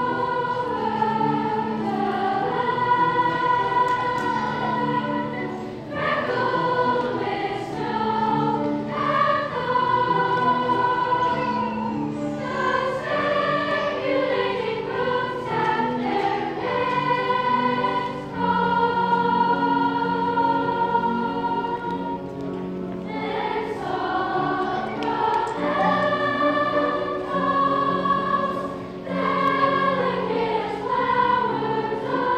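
Sixth-grade girls' choir singing, with phrases of held notes and short breaths between them.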